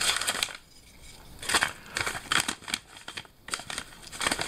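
Paper mailing envelope crinkling and rustling in irregular scrapes and crackles as two wooden whirligig hubs are pushed into it, with short quiet pauses between handlings.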